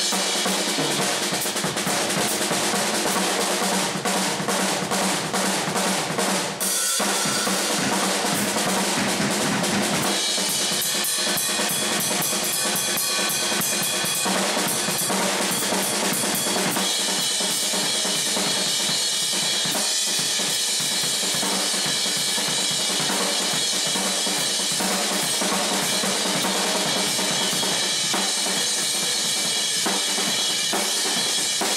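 Acoustic drum kit played solo: fast, continuous strokes on snare, toms and bass drum under ringing cymbals, with a brief break about six and a half seconds in and a denser cymbal wash from about ten seconds on.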